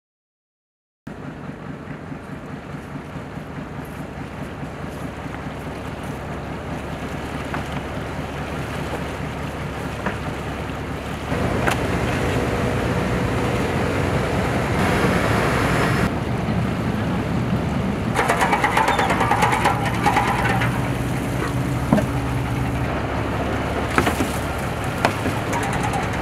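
A small fishing boat's engine running steadily, with water noise. It fades in about a second in and becomes louder about eleven seconds in.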